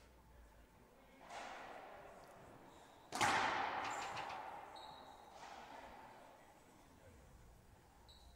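Racquetball being hit during a rally: a softer hit about a second in, then a sharp, loud crack about three seconds in that rings on in the court's echo for a couple of seconds. Brief high squeaks of sneakers on the hardwood floor follow it.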